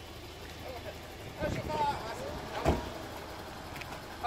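Outdoor street sound with people's voices calling out at a distance, and one sharp thump a little past halfway through.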